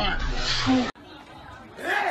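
A voice speaks briefly, then an abrupt cut leads to the low chatter of a crowd in a hall. A sudden louder burst breaks through near the end.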